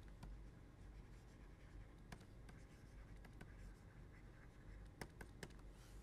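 Faint taps and scratches of a stylus writing on a pen tablet, a few scattered clicks over near-silent room tone.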